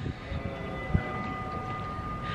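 A steady low rumble with a faint, steady high whine over it, like a running motor, with one short knock about a second in.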